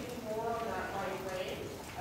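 Indistinct talking across the arena, over the footfalls of a horse being ridden on the arena's dirt footing.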